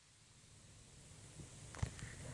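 Faint room hiss, then near the end a few soft, sharp clicks as a mouthful of mixed rice is taken off chopsticks, just before biting.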